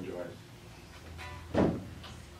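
A single dull thump about one and a half seconds in, with a brief ring after it, against low room tone.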